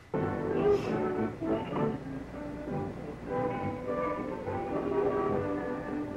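Orchestral film score for a silent film, with brass, starting abruptly just after the start and playing steadily.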